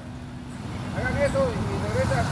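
Motor vehicle engine rumbling close by and growing steadily louder, with faint voices in the background from about a second in.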